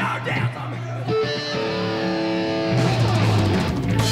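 Rock band playing live at full volume. About a second in it thins out to a single held chord ringing on its own, and the full band comes back in heavily near three seconds in.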